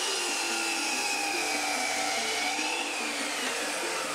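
Sliding compound mitre saw running and cutting through a wooden board, a steady motor whine that wavers slightly in pitch as the blade works through the wood.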